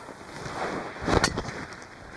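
A golf club swung at full speed: a swish building through the downswing, then one sharp crack as the clubhead strikes the ball a little after a second in.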